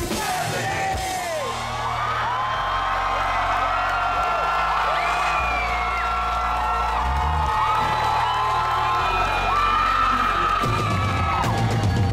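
Live band music in a rap song's instrumental break: an electric guitar holds long notes and bends them up and down over a changing bass line, with no drums.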